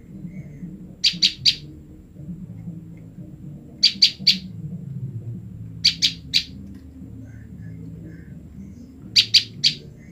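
Female common tailorbird calling in quick groups of three short, sharp, high notes, four groups in all, every two to three seconds. These are contact calls to her separated mate.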